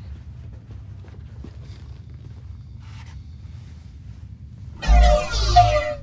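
A low steady spaceship-ambience hum, then about five seconds in a loud sci-fi sound effect lasting about a second, made of falling sweeps over a deep rumble: the effect of a hand phasing through a solid door.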